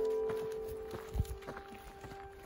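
Footsteps on a grassy dirt path, with one heavier step about a second in, over soft background music of long held notes that fades.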